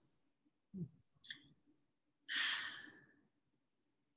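A woman sighs: a breathy exhale lasting just under a second, about two and a half seconds in. It follows a short, low voice sound near the start of the pause.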